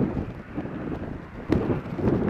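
Wind buffeting the microphone in a low, steady rumble, with one sharp knock about one and a half seconds in.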